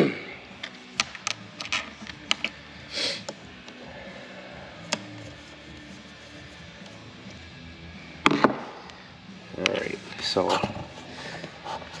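Scattered small metal clicks and clinks of a hand tool working screws on a Bosch P-pump diesel injection pump, with a louder clatter about eight seconds in.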